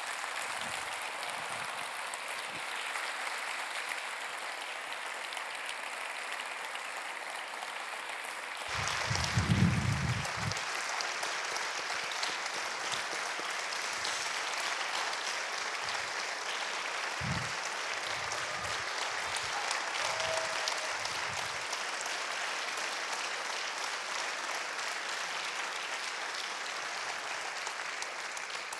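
An audience applauding steadily, with a brief low rumble about nine seconds in.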